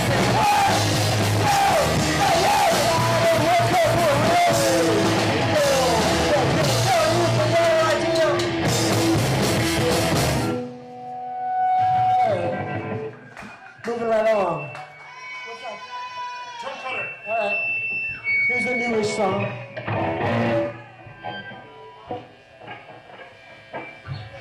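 Punk rock band playing live, loud guitars and drums, ending the song abruptly about ten seconds in. After that come scattered voices and a few stray held notes between songs.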